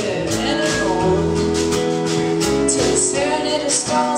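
Live band music: acoustic guitar strumming under singing voices, playing steadily through the gap between sung lines of the song.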